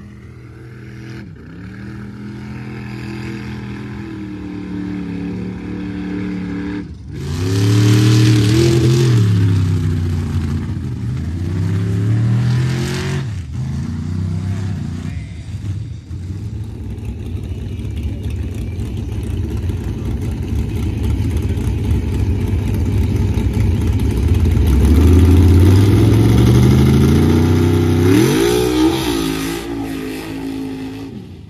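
Mud-racing trucks' engines revving hard down the mud track, the pitch climbing and falling back as each truck pulls through. It comes as several short runs, one after another, with abrupt cuts between them; the loudest and longest pull is near the end.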